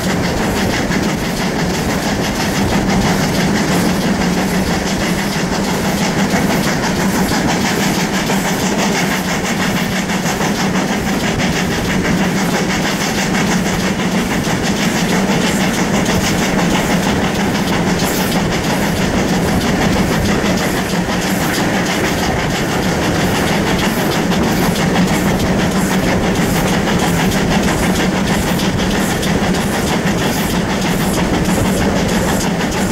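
Steam-hauled passenger train running along the line, heard from an open carriage window: the steady rumble of the coaches' wheels on the rails, with a faint regular beat throughout.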